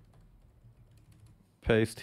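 Faint computer keyboard typing: a few light key clicks.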